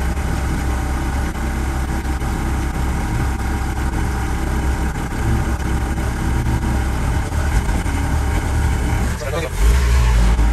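Mercedes-Benz 307D van's diesel engine running under way, heard from inside the cab as a steady deep drone with road noise.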